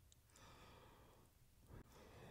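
Near silence, with a faint breath.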